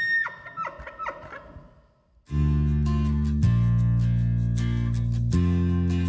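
The end of a bull elk's high whistling bugle, cut off within the first moment and followed by a run of short grunting calls for about two seconds. After a brief pause, acoustic guitar music starts and is the loudest sound to the end.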